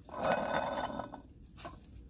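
Worn bearings in an old 1998 Dodge Dakota water pump grinding as its shaft is turned by hand: a rough, gritty noise for about a second that then dies away. The bearings are shot and the shaft has play.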